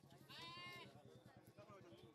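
Near silence: a faint low hum, with one brief, faint, high-pitched call about half a second in.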